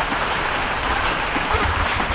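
Two steam locomotives coupled together, running past under power: a steady noise of exhaust and running gear on the rails.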